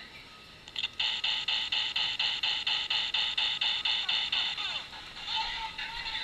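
Laser tag gun's electronic firing sound effect: a rapid automatic string of beeping shots, about seven a second, starting about a second in and stopping near five seconds.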